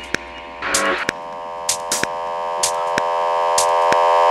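Minimal techno track in a breakdown with no kick drum. A sustained synthesizer chord comes in about a second in and swells steadily louder over sharp, sparse percussion hits about once a second.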